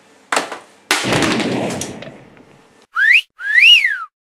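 A sharp knock, then a loud crash that fades away over about a second and a half. Near the end comes a two-part wolf whistle: a rising note, then a louder one that rises and falls.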